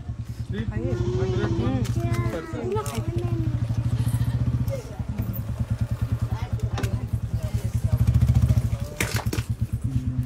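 A small engine idling with a fast, even putter throughout, swelling louder about eight seconds in. Voices speak over it in the first few seconds.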